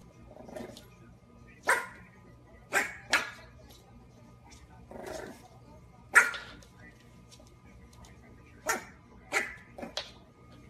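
French bulldog puppy barking at a toy car: about seven short, sharp barks, some in quick pairs, with two softer, lower sounds between them.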